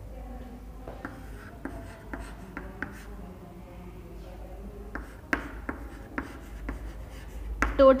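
Chalk on a chalkboard: a series of short taps and scratches as words are written, with one sharper tap about five seconds in.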